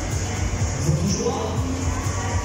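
Fairground ride music over the sound system, with a heavy, thudding bass beat, and a voice over it partway through.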